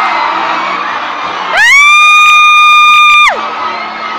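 Arena crowd cheering, and about a second and a half in, one loud, high-pitched scream from a fan close to the microphone that rises in pitch, holds for nearly two seconds and then drops away.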